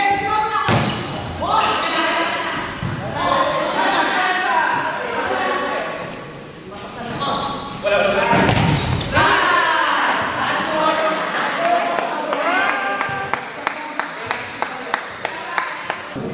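Players and onlookers shouting and calling out in an echoing gymnasium during an indoor volleyball rally, with occasional sharp slaps of hands on the ball. Near the end comes a quick run of evenly spaced sharp smacks.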